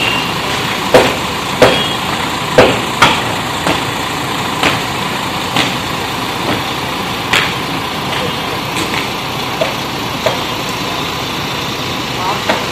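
A vehicle engine idling steadily, with irregular sharp knocks and clicks that come several times in the first few seconds and then thin out.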